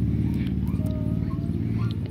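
A steady low droning hum, as from a motor or engine running, holding level throughout.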